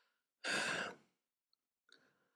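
A man's single audible breath, a sigh-like rush of air about half a second long, into a close microphone; a faint mouth click near the end.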